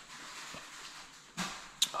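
A person sipping a drink through the straw of a Stanley tumbler: a soft steady hiss for about a second, then a short breath and a sharp click near the end.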